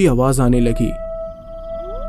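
Animal howling sound effect: a long held howl begins about half a second in, joined near the end by a second howl rising in pitch, after the last word of a man's narration.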